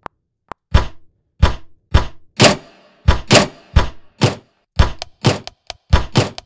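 Drum hits built from sampled microwave sounds, played back as a beat in a music program: thunks and knocks about two a second, crowding into a quick run of lighter clicks near the end.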